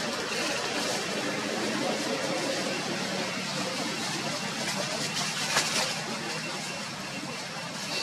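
Steady outdoor background noise, an even hiss with no clear calls, broken by one sharp click about five and a half seconds in.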